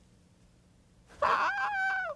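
A man's mock cry of pain, high-pitched and held, then falling in pitch as it ends, after about a second of near silence.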